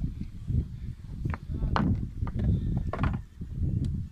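Irregular knocks and taps on a boat deck over a steady low rumble.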